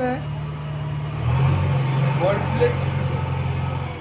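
A steady low engine drone, like a motor idling nearby. It grows louder and shifts slightly in pitch about a second in.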